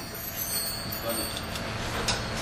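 Low background noise of a club stage between soundcheck numbers: faint indistinct voices over a steady low hum.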